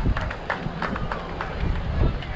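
Spectators at a baseball game calling out, with scattered sharp claps or clicks during the play.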